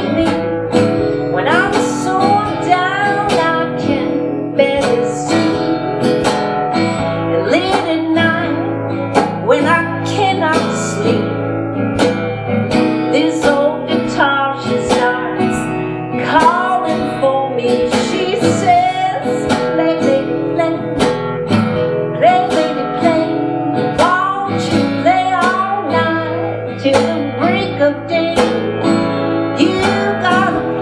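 Acoustic guitar strummed in a steady rhythm, with a woman singing over it.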